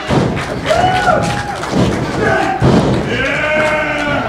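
Heavy thuds of wrestlers' bodies hitting the wrestling ring mat, about three of them, with shouts and yells between.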